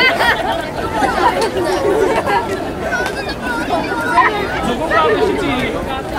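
Several people talking at once: overlapping chatter of voices with no single clear speaker.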